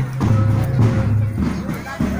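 Music with a steady, repeating beat and a strong low tone, with a voice over it.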